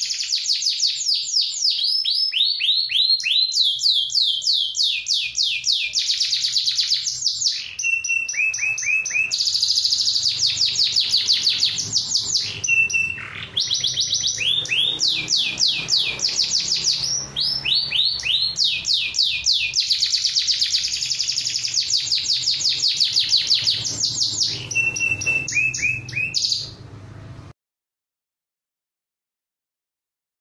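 Domestic canary singing a long, unbroken song of rapid trilled phrases. Each phrase is a quick run of repeated high notes, and the bird switches to a new phrase every second or two. The song stops shortly before the end.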